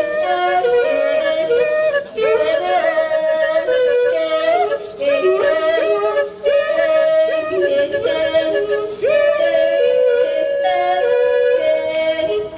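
A woman singing solo into a microphone over a PA, her voice leaping quickly between notes in short phrases with brief breaks between them.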